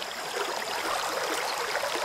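Stream water flowing steadily, an even hiss with little bass.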